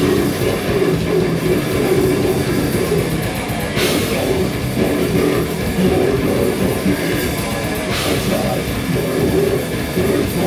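A live heavy metal band playing loud and fast: distorted guitar and pounding drums, with cymbal crashes about four seconds in and again about eight seconds in.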